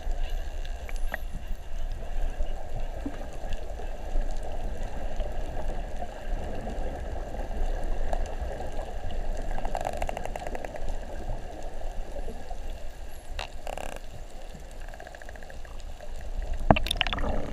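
Underwater ambience picked up by a submerged camera: a steady wash of water noise with a low rumble. About ten seconds in comes a brief, rapid run of clicks, then two short buzzes a few seconds later.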